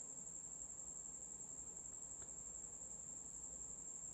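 Faint, steady high-pitched whine over low background hiss, with one tiny click about two seconds in.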